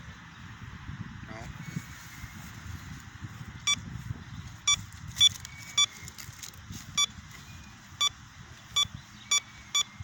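Metal detector giving short, high beeps, nine of them at uneven intervals starting a little over a third of the way in, as its search coil is passed over a freshly dug hole: the detector's signal that the coin is still in the hole.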